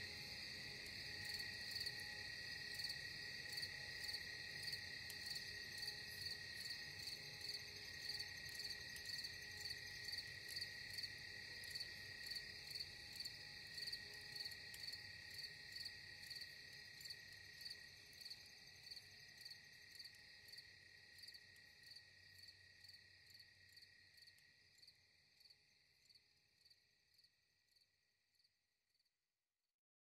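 Crickets chirping in a steady, even rhythm with a high trill, fading out gradually over the last several seconds to silence.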